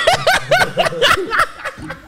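Men laughing: a quick run of short 'ha-ha' bursts, about five a second, that dies down near the end.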